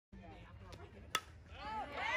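A fastpitch softball bat hitting a pitched ball: one sharp crack about a second in. Spectators start shouting and cheering just after.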